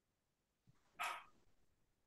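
Near silence in a pause between speech, broken about a second in by one brief, faint sound.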